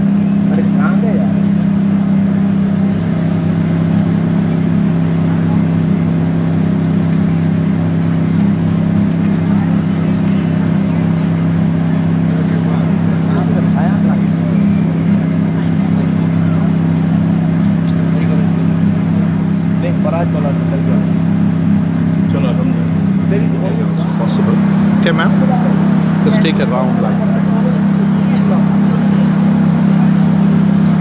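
A loud, steady low hum throughout, with faint voices talking in the background, mostly in the second half.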